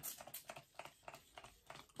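Makeup setting spray pump bottle spritzed rapidly, about six quick faint spritzes a second, thinning out near the end. The bottle is nearly empty and gives only little spritzes.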